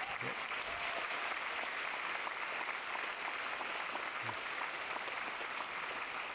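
Audience applauding steadily, a continuous patter of many hands clapping.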